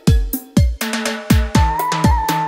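Electronic bolero 'nhạc sống' backing music with a steady kick-drum beat and snare. A held high note comes in about one and a half seconds in.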